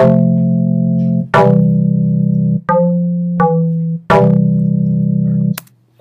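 A MIDI part played back through a software instrument in Logic Pro: five loud sustained chords or notes, each starting bright and cutting off suddenly, with short gaps between them.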